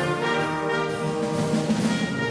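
Amateur wind band of saxophones and brass playing, with the brass to the fore.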